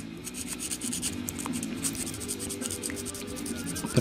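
Sandpaper rubbed by hand against a small black plastic model-kit part, in rapid, even scratchy strokes, smoothing the part down.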